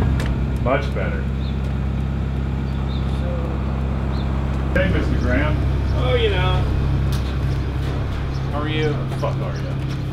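Forklift engine idling with a steady, even low hum, while voices talk faintly in the background.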